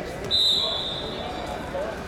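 A referee's whistle blown once about a third of a second in: a high, steady tone held for about a second, then trailing off.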